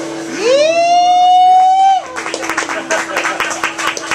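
Applause at the end of a song. A voice whoops, rising and then held for about a second and a half. Scattered clapping starts about two seconds in, while the last acoustic guitar chord rings on underneath.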